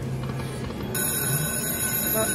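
Aristocrat Lucky 88 video slot machine's electronic game sounds as a new spin starts, with a steady chord of high electronic tones coming in about a second in.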